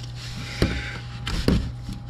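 Gloved hands working a slippery plastic drain piece out of a cartridge oil filter housing: a soft rustling scrape with two light knocks about a second apart.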